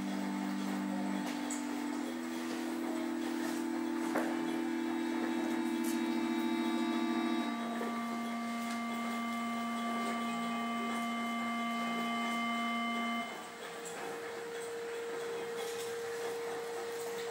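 An ambient drone of steady held tones: a few low notes sound together for several seconds each, changing every few seconds, with fainter higher tones joining through the middle. Near the end the low notes stop and a single higher note is held alone.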